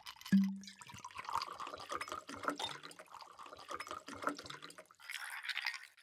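An ice cube knocks into a glass tumbler with a short ring, then liquid is poured over ice, with dense crackling and clinking of ice and a rising filling tone. A soft hiss follows near the end.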